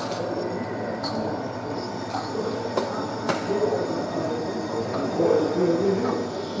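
Model train running on an exhibition layout, with scattered clicks from wheels on the track.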